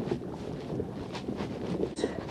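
Wind buffeting the microphone over choppy sea, with small waves lapping against the kayak's hull: a steady rough hiss with a few faint splashes.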